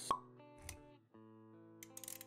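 Intro jingle of sustained synth-like notes, opened by a short sharp pop sound effect just after the start. A soft low thump follows partway through, and the music drops out briefly before carrying on.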